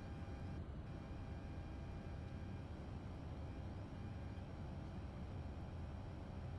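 Steady in-flight cockpit noise of a Citation CJ1 jet on approach: a low, even rumble of airflow and engines with faint steady whining tones above it.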